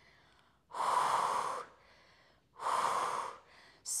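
A woman breathing audibly into a close clip-on microphone while exercising: two breaths, each about a second long, with a short pause between them.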